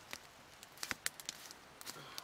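Small campfire of dry sticks crackling, with a few scattered sharp pops, the loudest just before a second in.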